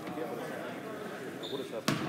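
A basketball bounces once, sharply, on the hardwood gym floor near the end, over indistinct background voices.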